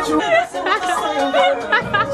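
Several people's voices chattering over one another, with no clear words.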